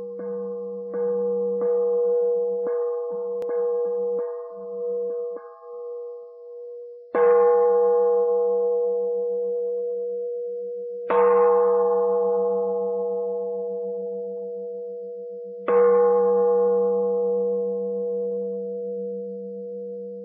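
A Buddhist bowl bell struck repeatedly: a run of lighter strikes about one a second, then three loud strikes about four seconds apart, each left to ring out with a slowly wavering hum.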